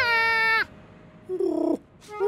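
Curious George's cartoon monkey vocalisation: a high, bright "ooh" that slides up and is held for about half a second. About a second later comes a shorter, lower call that falls in pitch.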